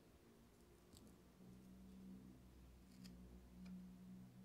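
Near silence: a faint steady low hum with a few faint handling clicks, about a second in and twice near the end.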